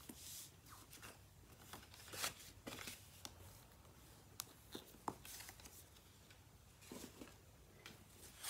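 Faint, scattered rubbing and soft scrapes of a bone folder pressed along the scored fold of white cardstock, with paper sliding and being handled.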